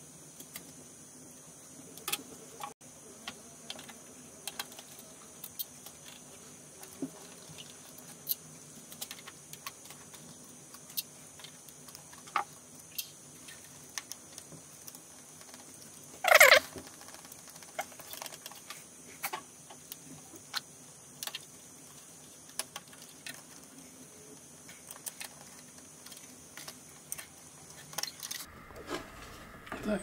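Hands handling a Dell PowerEdge R710 server's motherboard and its cable connectors: scattered light clicks and taps, with one louder clack a little past halfway. A faint steady high hiss underneath stops shortly before the end.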